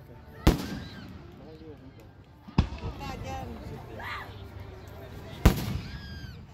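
Aerial fireworks shells bursting overhead: three sharp booms, about two and three seconds apart.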